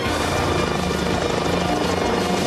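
Helicopter rotors beating low and fast, mixed into soundtrack music with held tones; the rotor sound comes in right at the start.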